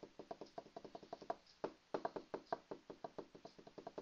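Faint, rapid, even clicking or tapping, about eight clicks a second, with a brief pause about one and a half seconds in.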